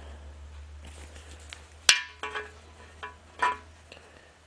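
Metal engine parts clinking as they are handled: one sharp clink just before two seconds in, then a few lighter ringing clinks, over a steady low hum.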